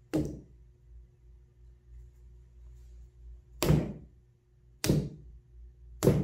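Rubber mallet whacking down onto wet paint puddles on a stretched canvas: three dull thuds, one right at the start, then two more a little over a second apart from about three and a half seconds in.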